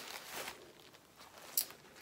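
Tissue paper rustling as it is pulled apart by hand, fading after the first half second, with one short sharp crinkle about a second and a half in.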